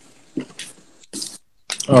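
Sheet of origami paper being folded and creased by hand, a few short soft rustles, followed near the end by a voice starting to speak.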